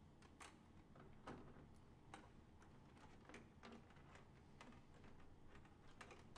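Near silence: quiet room tone with faint, irregular clicks, a few scattered over the seconds.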